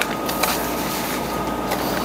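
Steady rushing background noise with a faint steady tone above it and a few faint clicks.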